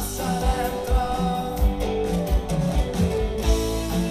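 Rock band playing live through a concert PA, heard from the crowd: electric guitars, keyboard and drums with a male lead vocal.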